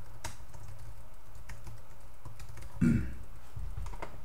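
Typing on a computer keyboard: scattered quick key clicks over a steady low hum, including a correction as a word is retyped. A brief low sound, louder than the keys, comes a little before the three-second mark.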